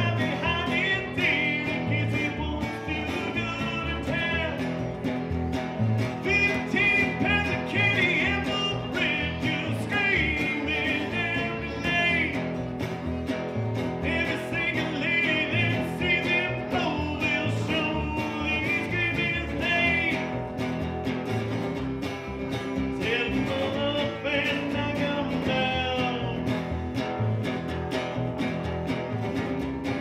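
Live acoustic guitar strummed together with a plucked upright double bass, with a man singing into the microphone in phrases of a few seconds each.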